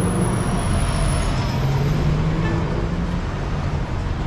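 A large coach bus going by close at hand, its engine a steady low drone over city street traffic.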